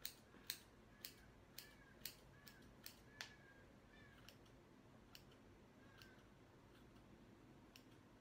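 Hair scissors snipping into the ends of a ponytail: faint, sharp snips about twice a second, each with a short high squeak of the blades. After about three seconds they thin out to a few scattered snips.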